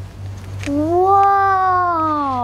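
A young girl's voice holding one long drawn-out syllable, which rises and then slowly falls in pitch as an exclamation of delight. It starts a little over half a second in and is still going at the end.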